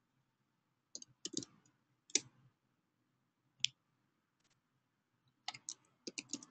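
Faint computer keyboard keystrokes in short bursts: a quick run of taps about a second in, single taps around two seconds and three and a half seconds in, and a few more near the end.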